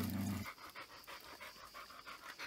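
A dog panting rapidly and steadily, faint, with a brief low hum of a man's voice at the very start.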